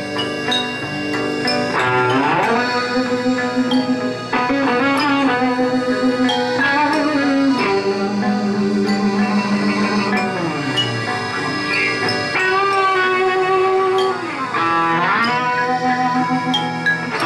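Live band music with no singing: electric guitar and accordion playing sustained notes. A few notes slide down in pitch, about two seconds in, near ten seconds and near the end.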